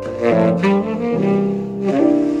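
Tenor saxophone playing a slow jazz ballad, moving through several sustained notes, with piano accompaniment.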